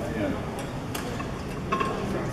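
Low murmur of people in a large room, with a sharp click about a second in and a short ringing clink near the end.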